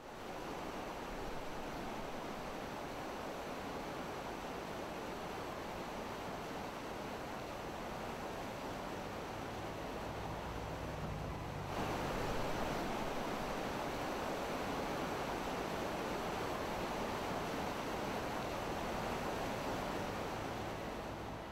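Steady rushing of moving water, an even wash of noise with no distinct splashes, stepping up in level about halfway through.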